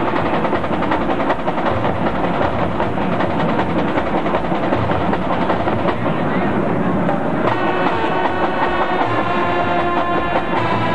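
High school marching band playing on a stadium field, heard from the stands: a busy passage of marching drums, with the band's brass coming in on held chords about seven and a half seconds in.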